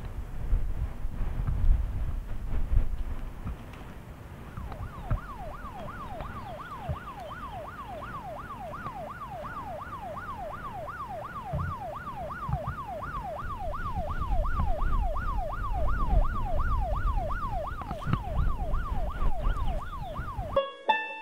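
A siren wailing up and down quickly, a little over twice a second, starting about four and a half seconds in. Under it there is a gusty low rumble.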